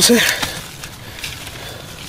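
Loose soil crumbling and a stone scraping against earth as it is shifted into place by hand, a brief noisier rush at the start, then faint rustling and small ticks of dirt.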